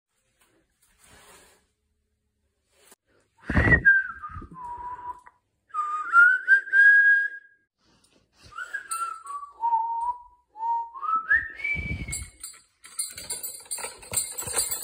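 A person whistling a slow tune, single notes sliding up and down. There is a dull low thump as the whistling starts and another near its end.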